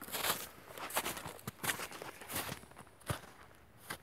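Footsteps: a string of irregular soft steps and rustles, with a sharper one about three seconds in.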